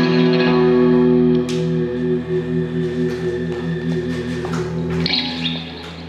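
Acoustic and electric guitars ringing out a held closing chord that dies away about five seconds in.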